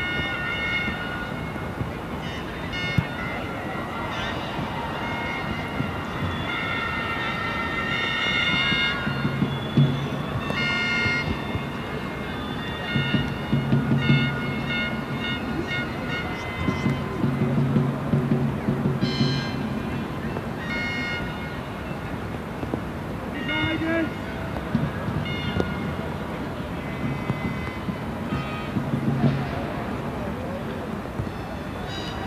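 Football stadium sound on a television broadcast: a steady crowd noise, with intermittent high-pitched tooting from the stands and, in the middle, a lower pitched sound.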